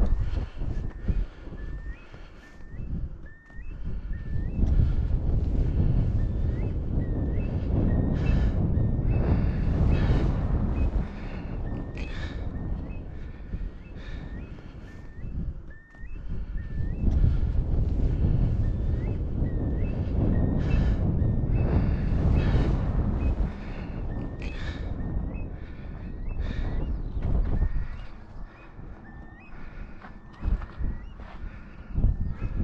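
Wind buffeting a GoPro microphone in gusts while a hiker walks on a moorland path, footsteps thudding regularly. A faint short squeak repeats about once or twice a second throughout.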